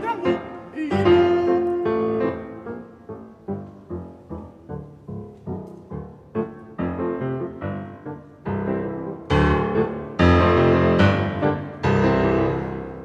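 Grand piano playing a song accompaniment on its own between sung phrases: a steady run of short detached notes, about two to three a second, that swells into louder, fuller chords near the end.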